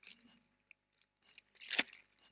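Gift wrapping rustling faintly as hands open a present, with one brief louder crinkle near the end.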